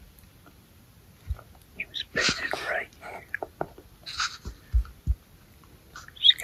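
A man whispering close to the microphone, with a few short, low thumps.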